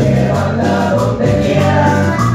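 Live Latin band music: congas and bass under several voices singing together.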